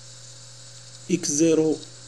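Steady electrical mains hum with hiss from the recording setup. About a second in, a man's voice holds one drawn-out syllable for under a second.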